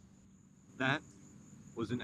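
Crickets chirring: a thin, steady, high-pitched trill throughout. A man's short one-syllable exclamation about a second in is the loudest sound, and speech begins near the end.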